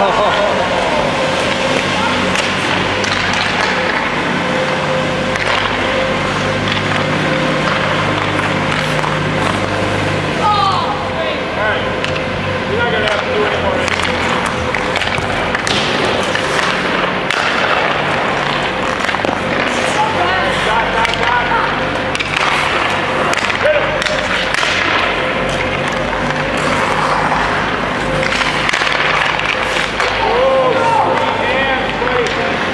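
Ice hockey shooting practice at an indoor rink: sharp knocks of sticks and pucks scattered throughout, over a steady hum and background voices.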